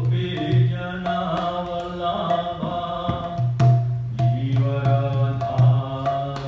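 A man sings a devotional chant while playing a mridanga, a two-headed barrel drum, in a steady rhythm of deep, booming bass-head strokes and sharp treble strokes. The voice and the drum break off briefly about three and a half seconds in, then carry on.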